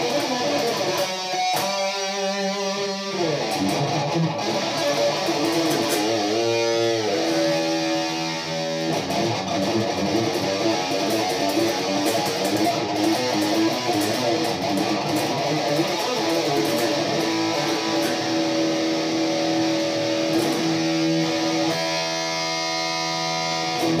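Electric guitar played through an amplifier: a lead line with string bends and a long held note about two-thirds of the way through.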